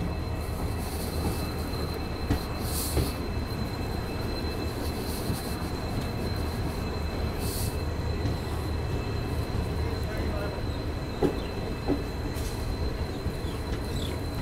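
Passenger train rolling slowly along a station platform: a steady low rumble of coach wheels on the rails with a thin, steady high whine, a few short hisses, and a couple of sharp clicks near the end as wheels cross rail joints.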